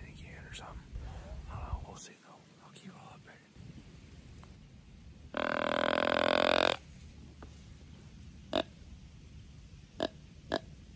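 Deer grunt tube blown by mouth, imitating a buck's grunt: one long grunt of about a second and a half around five seconds in, then a short grunt a few seconds later.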